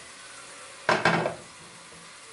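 A pan of oil heating on a gas stove, with a faint steady hiss. About a second in comes one short clatter that quickly fades.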